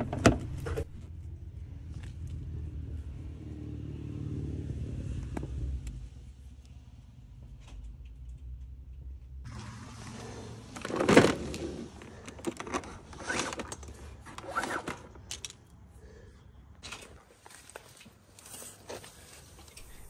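Handling noises of a charging adapter plug and its cable: scattered clicks, knocks and scrapes, the loudest about 11 seconds in, over a low rumble during the first six seconds.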